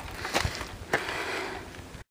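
Footsteps crunching on a rocky gravel trail, two sharp steps about half a second apart, with breathing from the steep climb.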